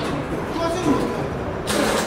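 Men talking during platform-door installation work, with a short, loud hiss of air or noise near the end.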